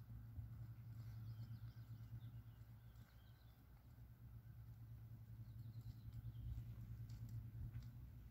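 Faint birdsong, a few short high chirping phrases, over a low steady rumble.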